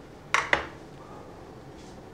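Two sharp metallic clacks about a fifth of a second apart, a little under half a second in, each with a short ring: metal kitchen tongs knocking as they are handled and put down.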